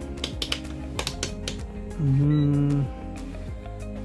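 Rotary selector dial of a digital multimeter clicking through several positions, a quick run of sharp clicks in the first second and a half, over background music. About two seconds in, a man's voice holds one low sound for about a second.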